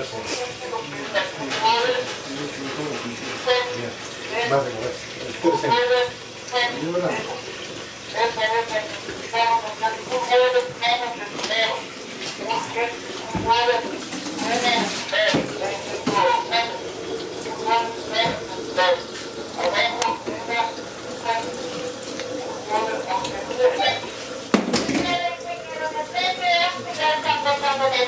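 Clinks and knocks of containers and glassware at a bench sink, with water splashing, while liquid chemicals are measured out in a graduated cylinder. Voices talk throughout underneath.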